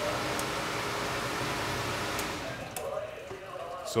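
Recirculation pump and water rushing through the piping, a steady noise that dies away about two and a half seconds in as the pump is switched off.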